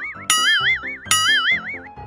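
Cartoon 'boing' sound effect, a springy tone whose pitch wobbles up and down. It restarts twice in quick succession, about every 0.8 s, each time over a few low notes.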